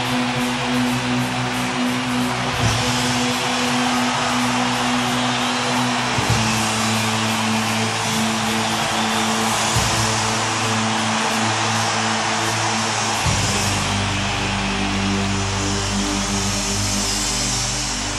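Live hard-rock band playing an instrumental passage: distorted electric guitars and bass hold long, loud chords that change twice, about every six or seven seconds, over a dense high wash of sound.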